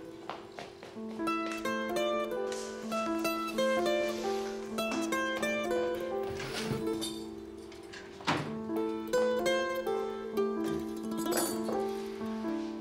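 Background score music: a melody of short plucked-string notes over a sustained low drone.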